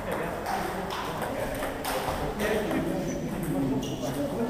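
Celluloid-type table tennis balls clicking irregularly off tables and rubber-faced paddles as rallies go on at several tables at once, with a murmur of voices beneath.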